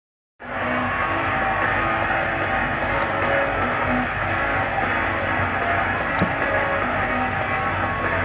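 Concert music playing from a small CRT television, heard through its speaker across the room, starting a moment in; a short click sounds about six seconds in.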